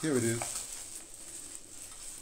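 Faint rustling and crinkling of a plastic bag as hands rummage through it.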